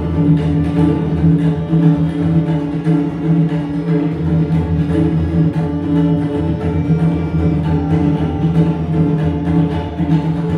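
Group tabla playing: several tabla pairs played together in a dense, continuous stream of strokes over a steady pitched ring.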